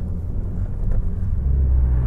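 Honda Civic hatchback (FK7) on the move, heard from inside the cabin: a steady low rumble of engine and road noise that grows a little louder about halfway through.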